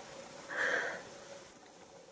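A single short breath close to the microphone, about half a second in, then quiet room-like hiss.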